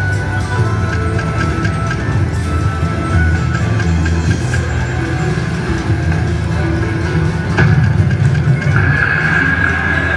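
Ainsworth Ultimate Fortune Firestorm slot machine playing its electronic spin music and win jingles as the reels spin and pay small line wins. A brighter sustained chime comes in near the end.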